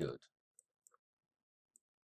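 A few faint computer mouse clicks, short and sharp, spread over about a second, made while the map is clicked and dragged.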